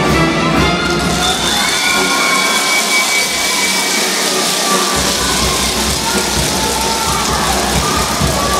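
Brass band playing a marinera norteña over a cheering crowd. The bass drops out for a few seconds and comes back in strongly about five seconds in.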